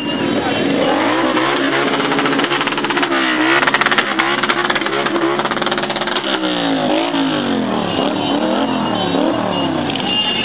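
Several motorcycle engines revving, their pitch rising and falling again and again over one another, with a crowd in the background.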